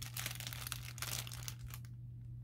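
Packaging crinkling in the hands as a small package is opened, with soft, irregular crackles.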